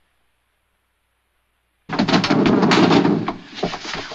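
Silence for about two seconds, then a sudden loud burst of rapid banging and crashing impacts lasting about a second and a half.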